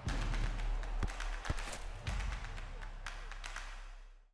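Sound effects for an animated logo: a dense noisy bed with a deep rumble, crossed by clicks and two sharp thuds about one and one and a half seconds in, fading out at the end.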